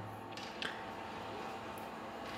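Faint room tone with a low steady hum, broken by a few light clicks from a metal tripod lamp stand being handled, the clearest just past half a second in.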